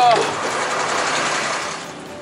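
Steady mechanical whirring with a hiss that fades out near the end. A brief word is spoken at the very start.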